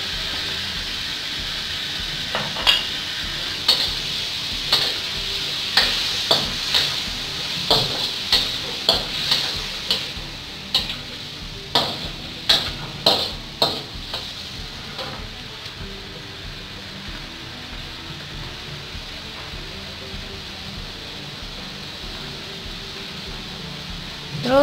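Pork and ginger sizzling in a hot wok while a metal spatula stirs and scrapes, its strokes against the wok giving a run of sharp clicks and scrapes through the first half or so. After that the clicks stop, leaving a steadier, quieter sizzle.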